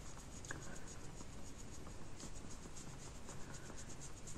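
Makeup brush blending eyeshadow on an eyelid: faint, quick, repeated soft brushing strokes.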